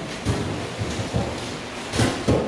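Handling noise from a handheld camera or phone being moved in close: a low rumble with several soft thumps.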